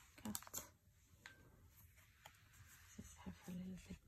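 Faint clicks and slides of oracle cards being handled and flipped by hand: a quick cluster of small taps in the first second, then a few single clicks.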